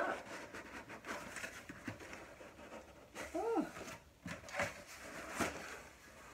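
Cardboard box flaps scraping, creaking and rustling in short bursts as a stuck shipping box is pried open. A brief effortful voice sound, rising then falling, comes about three seconds in.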